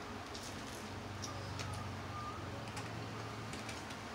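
A man chewing a mouthful of deep-fried fish, with faint scattered mouth clicks and a low steady hum running for about three seconds.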